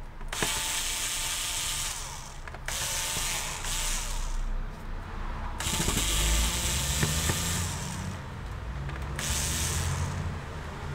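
Small cordless electric screwdriver running in several short bursts of a second or two each, driving out the screws of a laptop's bottom case.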